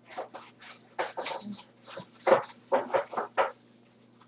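Cardboard pizza box and plastic wrapper handled and opened by hand: a quick run of irregular rustles and crackles, loudest from about two to three and a half seconds in, over a steady low hum.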